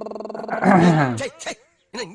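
A man's voice holding a long, steady, pulsing note that breaks about half a second in into a loud cry sliding down in pitch, cut off suddenly partway through.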